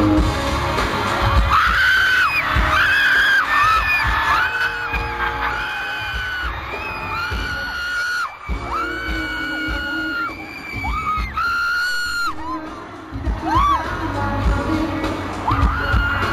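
A woman close to the microphone screams over and over in short, high-pitched held screams, over loud pop music with a steady beat from the arena's sound system. The screams die away about three-quarters of the way through, leaving the music.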